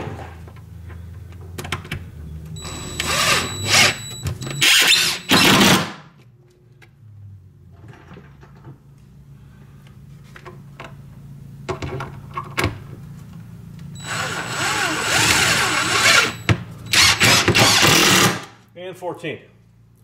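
Cordless drill driving screws through an OSB shelf board, in two long runs of several seconds each with a high motor whine, and a few short bursts between them.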